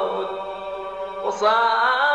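A man chanting a melodic Arabic religious recitation into a microphone: a held note fades over the first second, then a new, louder phrase begins about one and a half seconds in.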